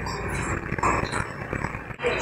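A small pet dog making soft, low noises close to the microphone.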